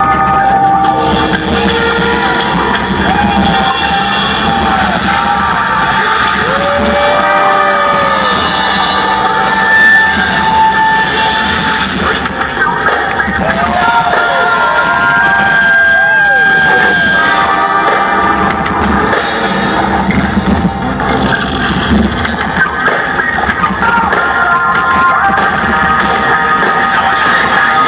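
Amplified live rock band playing a song's instrumental intro, with sustained guitar notes that bend up and down over a continuous wash of loud sound, and crowd noise.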